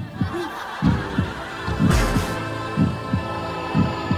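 A heartbeat sound effect, deep thumps about once a second, over a sustained music drone: an edited-in suspense cue.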